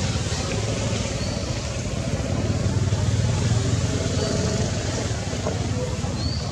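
Outdoor background noise: a low engine rumble from passing traffic swells around the middle, under faint distant voices and a few brief high chirps.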